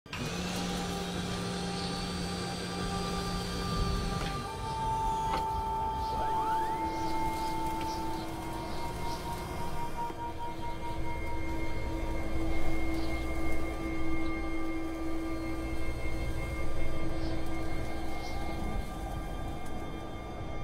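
Ominous film-score music of long held tones, one sliding upward about six seconds in, over a low rumble.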